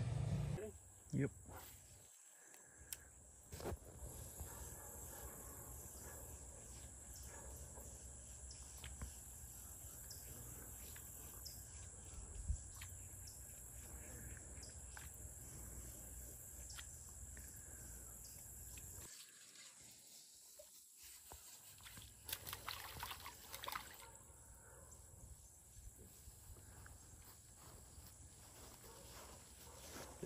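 Faint outdoor ambience with a steady high insect drone and scattered small clicks and taps, and a few louder rustles about two-thirds of the way through.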